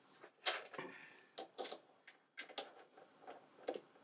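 Faint, irregular metal clicks and taps, about eight in all, as a scrap bar is seated in a Burnerd three-jaw lathe chuck and the jaws are closed on it with the chuck key.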